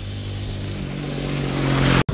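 A motor vehicle's engine running nearby as a low, steady hum that rises in pitch about halfway through and grows steadily louder toward the end.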